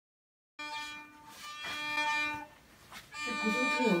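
Electric violin playing a few long bowed notes, starting about half a second in.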